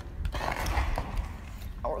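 Rustling and bumping of a phone being handled close to its microphone, over a steady low rumble. A short bit of speech comes just before the end.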